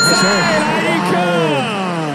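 Mandarin sports commentary, a voice swinging widely in pitch as it calls the play, with a brief steady electronic tone in the first half-second.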